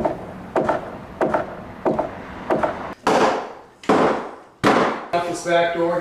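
Roof tear-off: a worker strikes and prys at wooden roof boards, with five sharp knocks on wood about every half second, then three louder, longer crashes as boards are wrenched loose and fall.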